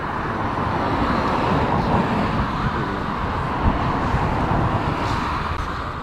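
Steady outdoor road traffic noise, an even rush of passing cars with a brief louder moment midway.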